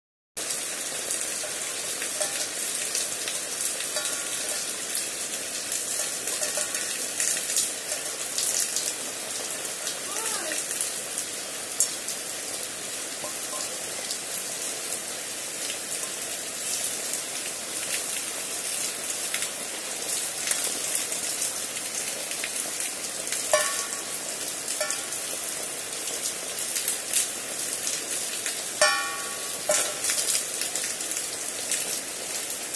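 Steady rain falling: an even hiss with the sharp ticks of individual drops striking wet leaves and surfaces.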